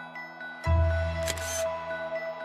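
Background music of soft mallet-percussion notes, cut across about two-thirds of a second in by a slide-transition sound effect: a sudden deep boom that fades over about a second, with a short hissing burst half a second later.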